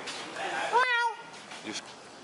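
A single short, high-pitched meow about a second in, rising then falling in pitch: a person imitating a cat.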